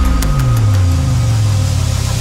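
Cinematic sound-design hit in the soundtrack: a sudden low boom whose pitch slides down over about a second and settles into a steady deep drone, with a few sharp ticks over it.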